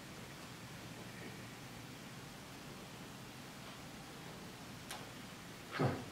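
Quiet room tone with a faint steady low hum, a soft click shortly before the end, then a man's short "huh."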